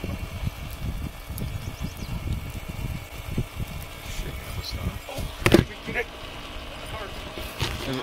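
Wind buffeting the microphone outdoors, an uneven low rumble throughout, with one sharp knock a little past five seconds in.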